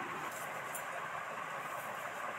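Steady rushing background noise, with a few faint light ticks.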